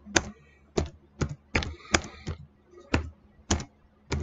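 Computer keyboard being typed on at a slow, uneven pace: about nine separate keystrokes as a line of text is entered.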